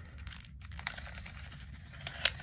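Folded sheets of origami paper rustling and crinkling faintly as fingers tuck and press the flaps of a modular paper pinwheel. There are a few small ticks, the sharpest a little under a second in.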